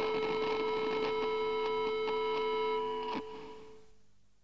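A single sustained note left ringing at the end of a rock song once the band stops, holding steady and then fading out, with a short click about three seconds in.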